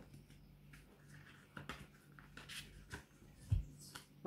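Tarot cards being handled: soft scattered clicks and slides of card stock as a card is drawn from the deck, with a low thump about three and a half seconds in, over a faint steady hum.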